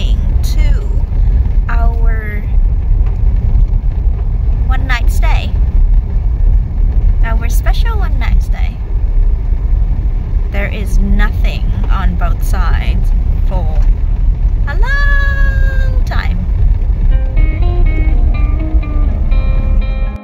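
Loud, steady low rumble of a car driving on a gravel road, with people's voices calling out at intervals. One long rising call comes about fifteen seconds in. Background music with plucked notes comes in about three seconds before the end.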